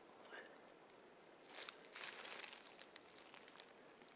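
Near silence outdoors, with a faint rustle of handling for about a second, starting a second and a half in.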